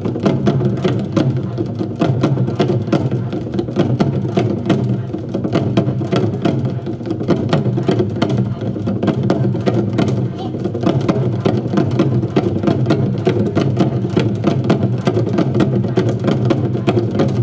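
Ensemble of Korean barrel drums on wooden stands struck with sticks in a fast, unbroken stream of strokes.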